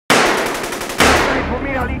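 A burst of rapid automatic gunfire, with many shots a second. It is followed about a second in by a single loud crash that rings and fades.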